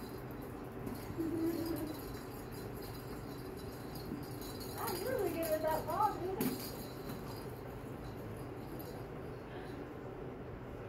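Soft coated wheaten terrier puppies playing, with a few short vocal sounds that rise and fall about five seconds in.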